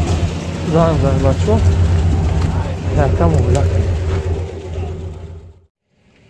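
A car engine idling steadily, with people talking over it twice. The sound fades out to silence shortly before the end.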